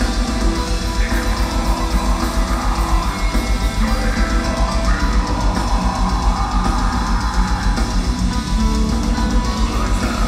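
Melodic death metal band playing live, heard from the crowd: distorted electric guitars over fast, steady drumming, loud and unbroken.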